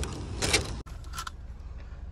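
Plastic shrink-wrap around a case of bottled water crinkling and rustling as the case is handled. The rustling is loudest in the first half and gives way to softer handling sounds, over a low steady hum.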